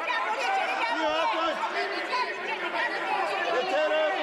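Many voices talking and shouting over one another at once: the uproar of members in a parliamentary chamber.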